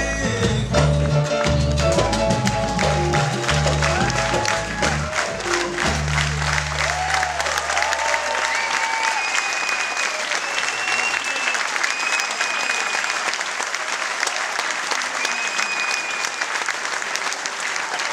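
A live piano-led performance ends on a held low final note about six seconds in, fading out by about ten seconds, while audience applause swells and carries on alone to the end.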